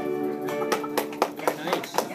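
The last acoustic guitar chord rings out and fades. About two-thirds of a second in, hand clapping starts as the song ends, a quick, uneven run of claps.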